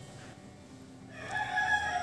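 A rooster crowing in the background: one long, held call that starts about a second in and swells in loudness.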